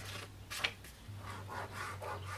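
A sheet of graph paper rustling and rubbing as it is handled and pressed against a wooden gun-stock forearm, with one sharper rustle about half a second in.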